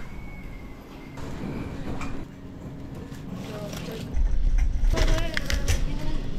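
Indistinct voices and general shop noise, with a low rumble starting about four seconds in.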